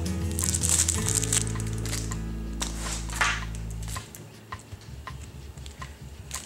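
Crinkling and crackling of the clear plastic sleeve around a makeup brush as it is handled. Under it, background music with long held low notes stops about four seconds in.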